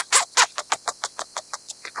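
Scaly-breasted munia singing: a rapid run of short, sharp notes, about seven a second.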